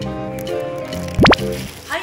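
Light background music with steady sustained notes. About a second in, a short, loud rising 'bloop'-like editing sound effect sweeps quickly upward in pitch.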